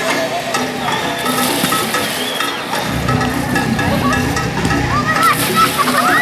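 Background music under children's voices and shrieks, with water splashing in bursts.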